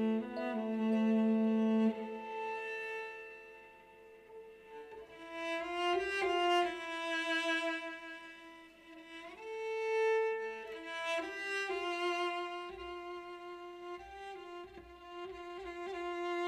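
Solo cello played with the bow: slow, sustained notes that shift in pitch every second or two, swelling louder and fading back several times.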